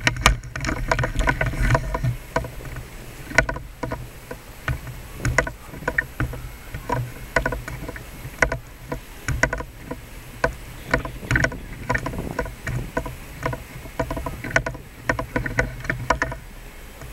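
Handling noise on a handheld camera carried while walking: irregular knocks, clicks and rustles over a steady low rumble.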